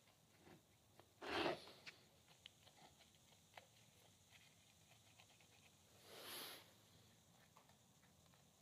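Near silence with faint clicks and two soft scuffs as the worn ball joint stud of an old track bar is worked by hand; the joint is worn loose.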